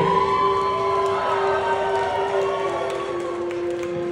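Amplified live band sound in a concert hall: one steady droning note held throughout, with fainter wavering tones above it and no drums or vocals.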